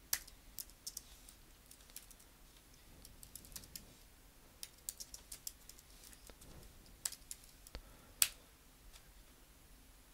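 Faint, irregular keystrokes on a computer keyboard as code is typed, in short runs with pauses; the sharpest clicks come right at the start and about eight seconds in.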